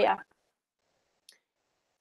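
A woman's voice breaks off, then near silence with one faint, short click about a second in, a computer mouse click.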